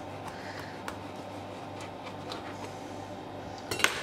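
A knife cuts through a mango with a few faint ticks, then a metal chef's knife clatters down onto a stainless steel countertop near the end, a short burst of sharp clinks that is the loudest sound.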